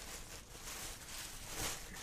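Clear plastic bag crinkling and rustling as the packed faux fur throw inside is shifted and turned by hand, with a louder crackle about one and a half seconds in.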